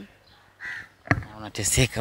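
A crow caws once, a short harsh call a little over half a second in.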